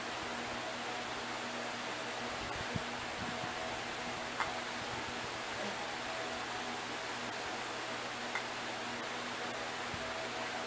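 Steady faint hiss of room noise with a low hum, and three small clicks from small items being handled.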